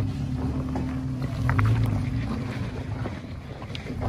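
Toyota Tacoma pickup's engine running at low revs as the truck crawls over rocks in four-wheel-drive low, the engine note swelling briefly near the start and again about a second and a half in.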